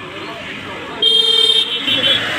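A vehicle horn honks: one steady blast of about half a second, starting about a second in, then a short second toot near the end.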